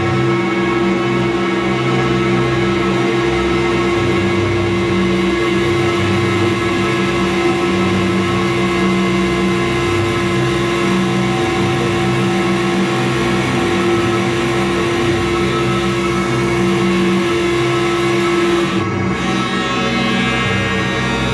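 Loud, droning experimental music from electric guitar and live electronics: a dense wall of held, overlapping tones with no beat. A strong low held note drops out near the end.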